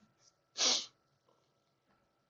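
A single short, sharp burst of breath from a person, a little over half a second in.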